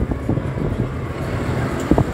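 Red London double-decker bus running close by at the kerb, its engine and drivetrain giving a steady low rumble amid street traffic noise, with a few brief knocks and some wind on the microphone.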